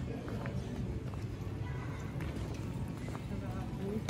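Footsteps clicking on stone paving as people walk across the square, over a steady low rumble and faint background voices.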